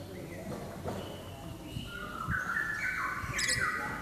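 A caged lory (nuri) calling: a run of short whistled notes stepping up and down in pitch through the second half, with a sharp shrill screech near the end.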